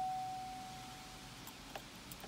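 A 2017 Chevrolet Silverado's single-note cabin warning chime, struck just before and fading away about a second in, sounding with the ignition switched on. A few faint light clicks follow near the end.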